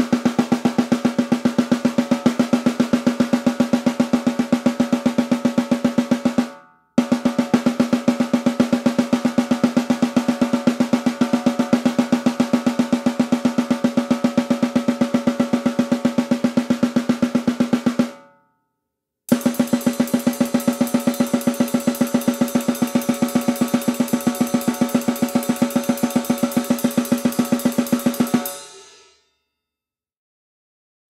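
Snare drum played in very fast alternating single strokes, left-right, as a traditional blast beat, with the snare's ring running steadily under the strokes. It comes in three runs, stopping briefly about six and a half and eighteen seconds in. In the last run one stick moves to a cymbal, adding a shimmer, and the playing ends about a second and a half before the end.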